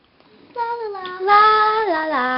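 A young girl singing a few long, held notes, starting about half a second in; the notes step down in pitch, with the loudest held note in the middle and a drop to a lower note near the end.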